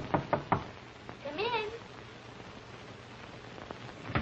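Knuckles knocking on a hotel-room door: a quick run of four raps in the first half-second, then a short wavering vocal call about a second and a half in. Old optical film soundtrack with a steady background hiss.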